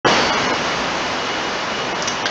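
Loud, steady rushing noise like hiss or static, with no tone or rhythm.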